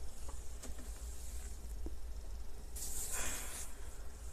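A person exhaling in one long breathy hiss lasting about a second, starting near three seconds in, after a few faint clicks. A low steady hum runs underneath.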